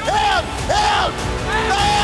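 Three loud shouts, each rising then falling in pitch, over background music.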